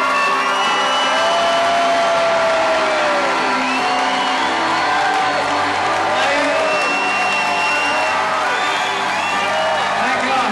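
Live band holding out the music of a country song while the audience cheers, whoops and whistles over it.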